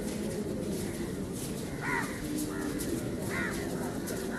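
Crows cawing: two loud caws about two seconds and three and a half seconds in, with fainter calls between, over a steady low background noise.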